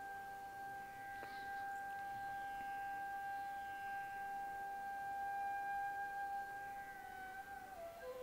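Soft instrumental background music: one long held note, then a few notes stepping down in pitch near the end.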